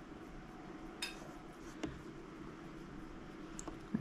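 A quiet room with a faint steady hum, broken by three light clinks: about a second in, just before two seconds, and near the end.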